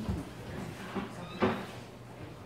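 A dull thump at the start and a louder, sharper knock about one and a half seconds in, as of something wooden being closed or set down.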